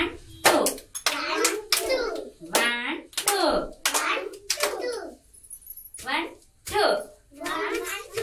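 Young children chanting short syllables in a steady rhythm, about two a second, with hand claps falling in among the words.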